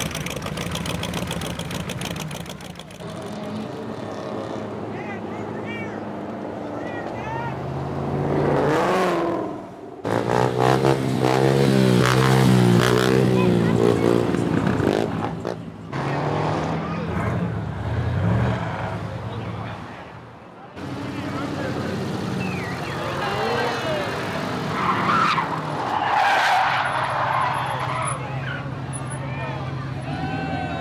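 Hot rod and muscle car engines running and revving as they drive past, the pitch rising and falling with the throttle. About ten seconds in comes the loudest part, a few seconds of tyre screech from a burnout, with crowd voices around it.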